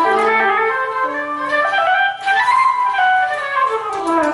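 Electric guitar played through a guitar synthesizer with a sustained, wind-like voice, running an A minor pentatonic scale: a string of smoothly joined single notes climbing and then coming back down.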